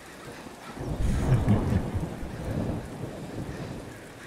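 Steady rain with a rolling rumble of thunder that swells about a second in and slowly dies away.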